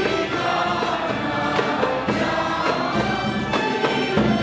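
Youth choir singing traditional Greek Christmas carols (kalanta) in unison. An ensemble with a large drum accompanies them, its beats coming roughly once a second.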